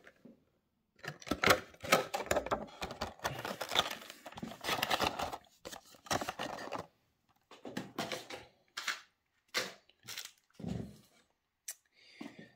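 Clear plastic blister tray crackling and clicking as a diecast model car is pressed back into it and the tray is pushed into its cardboard box: a run of irregular crackles and clicks with short pauses.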